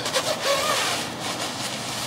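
Zipper of a Patagonia DAS Parka pulled up to the collar, with rustling of its thin 10-denier shell fabric.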